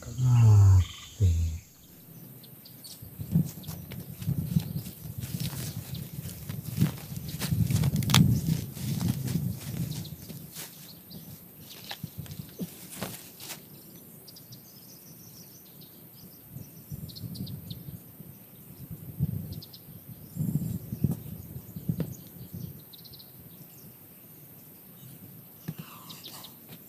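A brief vocal sound at the very start, then irregular knocks, scuffs and rustling from hands working soil and leaves while seedlings are planted, busiest in the first half and quieter after. Faint birds and insects chirp throughout.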